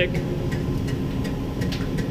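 A few faint clicks from the Danfoss VLT 2800 reel stand sidelay drive, over a steady low hum of machinery. The drive clicks as if it takes the command, but the sidelay motor does not turn: the sign of a drive that is not driving the motor, which the technician puts down to a controller fault, the input signal not being received.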